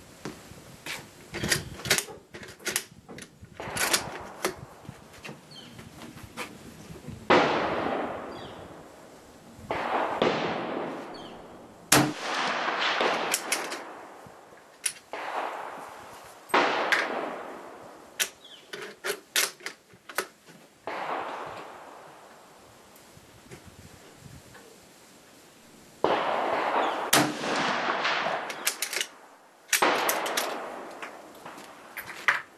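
Type 99 bolt-action rifle (7.7 mm Arisaka) fired several times, the shots a few seconds apart, each followed by a long echoing tail. Light metallic clicks and knocks from handling the rifle come in the first few seconds.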